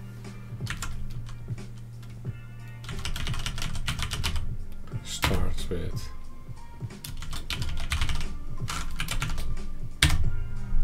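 Typing on a computer keyboard in several quick bursts of keystrokes with short pauses between them.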